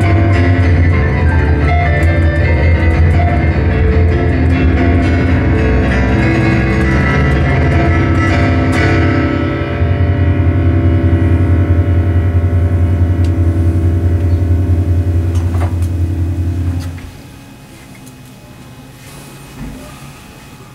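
Digital piano played very fast and loud in dense chords and runs, then a long held chord with heavy bass that cuts off sharply about seventeen seconds in: the close of the piece. After that only faint room sound.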